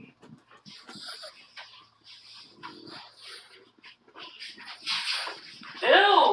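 A string of short, breathy sniffs and snuffles close to the microphone, around a Yorkie puppy, louder near the end.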